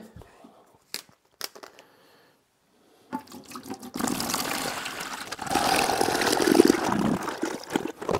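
Distilled water poured from a plastic gallon jug into an empty plastic bucket: a few handling clicks as the jug is opened, then a rushing, splashing pour from about four seconds in that grows louder partway through.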